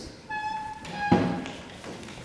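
Handheld microphone being handed over: a short steady high tone sounds twice, then the microphone gives a sharp handling thump about a second in.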